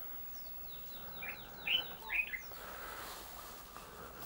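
A bird calling: a quick run of about ten short notes, each sliding down in pitch, over about two seconds, the last few louder.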